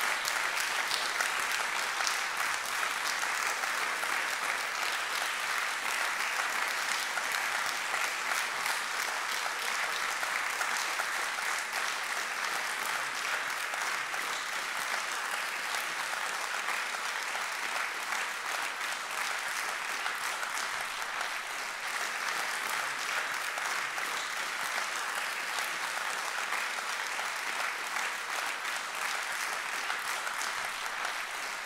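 Concert audience applauding steadily, a dense sustained clapping that eases a little toward the end.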